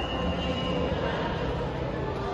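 Thyssenkrupp hydraulic elevator's pump motor and machinery running, a steady hum with a thin high whine that fades about a second in.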